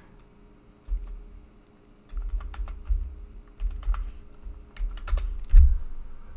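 Typing on a computer keyboard to log in to a Windows machine: irregular keystrokes in quick runs, starting about a second in.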